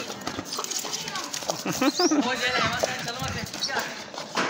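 A pitbull scuffling with a soccer ball on a hard deck: scattered knocks of paws and ball against the floor. About two seconds in, a wavering pitched vocal sound lasts about a second.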